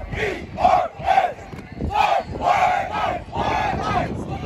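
A football team shouting together in unison during warm-up drills: a string of about seven short, loud group shouts.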